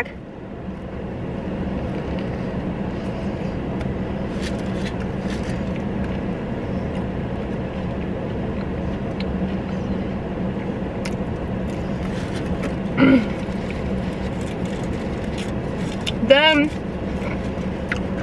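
Steady hum of a car running, heard inside its cabin, rising about a second in and then holding even. Faint scattered clicks of eating and of handling food and a napkin sound over it, with two brief vocal sounds near 13 and 16 seconds in.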